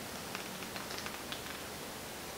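Quiet room tone: a faint steady hiss with a few soft, faint ticks.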